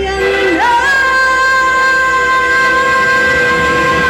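A woman singing through a microphone: a short upward slide about half a second in, then one long held high note.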